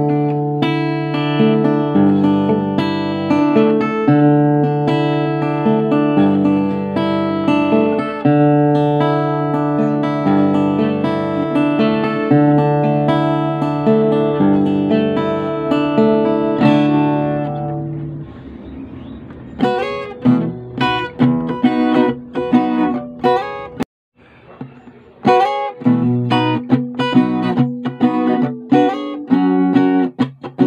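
Thompson cutaway acoustic-electric guitar played fingerstyle: ringing chords over held bass notes, then after a brief quieter moment a little past halfway, sharper single plucked notes with a short break near the end.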